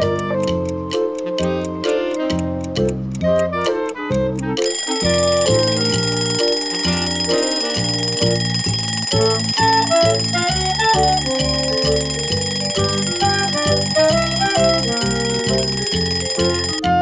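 Background music with a beat; about four and a half seconds in, an alarm clock starts ringing, a steady high ringing that keeps on over the music.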